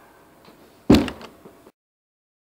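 A single loud bang about a second in, followed by two lighter knocks, then the sound cuts off suddenly.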